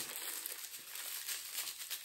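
Clear plastic wrap around a camera lens filter crinkling as it is handled.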